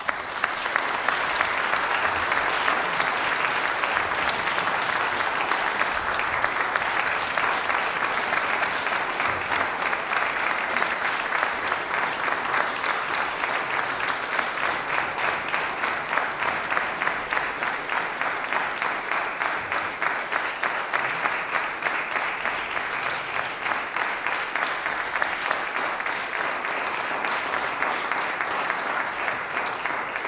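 Concert audience applauding, breaking out suddenly after silence at the end of a piece. In the second half the clapping falls into an even beat.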